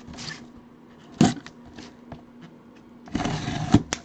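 Small white cardboard box handled with gloved hands: a single knock about a second in, a few light taps, then a short scraping rustle of cardboard near the end as the box is worked open.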